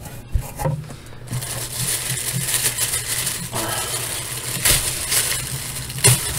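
Subscription snack box and its packaging being handled and rummaged through: continuous rustling and scraping, with one knock about a third of a second in.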